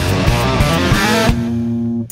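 Rock band playing an instrumental passage led by electric guitar. Just over a second in, the drums drop out and one held guitar note rings on.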